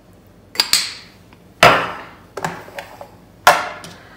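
Five sharp knocks and clacks of kitchen things handled on a hard countertop, the loudest about one and a half seconds in: a bottle set down and a plastic tub and lid handled.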